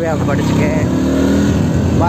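Motorcycle engine running steadily while riding along a dirt road, its note rising slightly about halfway through.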